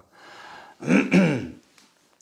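A man breathes in, then clears his throat once with a short voiced sound about a second in.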